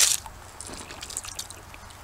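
A short scrape at the start, then faint scattered light scratches and ticks: a lump of soft red clay rubbed across a flat creek stone, leaving red streaks.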